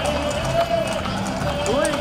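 Horses' hooves clip-clopping at a walk on an asphalt street, with voices and music going on behind them.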